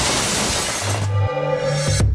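Car-commercial soundtrack: a loud rushing, crash-like burst of noise for about the first second, then a held chord of closing music as the brand logo comes up.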